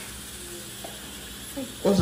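Steady, quiet kitchen room tone with a low hiss and no distinct sounds, then a man's voice starts near the end.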